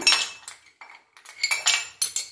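Ice cubes tipped off a metal spoon into a glass mug, clinking against the glass. There are two bursts of clinks, one at the start and another about a second and a half in.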